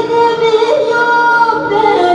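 A woman singing through a microphone and PA, holding long, wavering notes, backed by a live band with a bağlama (long-necked saz) and keyboard.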